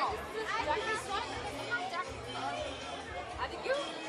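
Overlapping chatter of several voices, many of them high-pitched children's voices, with no one voice standing out.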